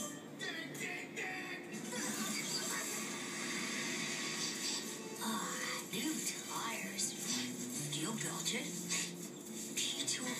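A television playing a film soundtrack, with music and voices.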